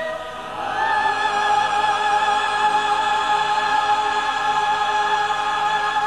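Choir singing sustained chords with vibrato; a new chord swells in about a second in and is held.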